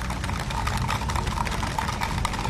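Audience applause: a spread of irregular hand claps over a steady low rumble.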